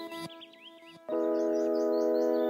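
Ambient background music of sustained chords that drops away at the start and comes back about a second in, with quick bird-like chirps over it.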